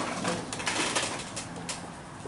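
Close rustling and shuffling of people stirring in their seats, loudest in the first second, with a faint low murmur of voices.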